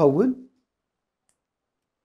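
A man speaking Tigrinya, his phrase trailing off with a falling tone about half a second in, followed by dead silence.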